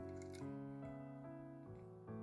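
Soft background keyboard music: held piano-like notes that change about twice a second.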